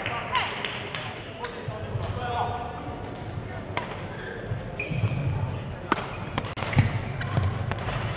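Badminton rally: a few sharp knocks of rackets striking the shuttlecock, spread a second or more apart, with players' feet thudding on the court in the second half, over a murmur of voices in the hall.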